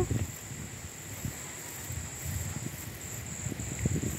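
A steady high-pitched insect trill over irregular low rumbling of wind on the microphone.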